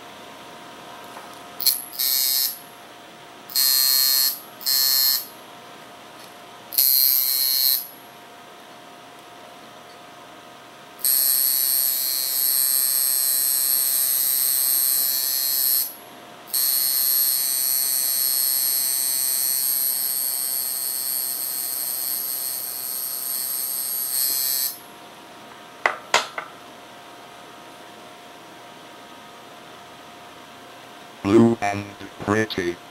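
Coil tattoo machine buzzing during linework, in stop-start runs: several short bursts at first, then two long runs of about five and eight seconds. Two brief clicks come a little after it stops.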